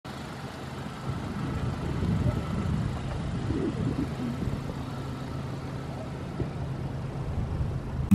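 Honda CR-V rolling slowly past through a parking lot, a low engine and tyre hum that swells over the first couple of seconds and then eases as it pulls away.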